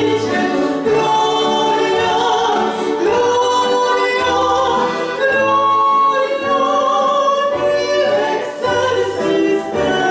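Two women's voices singing together in harmony, a Christmas carol sung through microphones, with long held notes.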